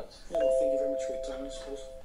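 A bell-like notification chime, the sound of a subscribe-button animation, strikes about a third of a second in: two steady tones held together that slowly fade, over dialogue in the background.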